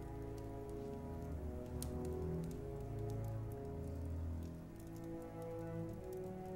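Soft, slow film score of long sustained notes, with faint scattered crackles over it.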